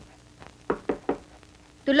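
Three quick knocks on a door, about a fifth of a second apart, around a second in.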